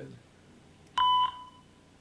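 A short electronic beep, one steady tone, sounding once about a second in. It is one of a series of identical beeps repeating about every two seconds.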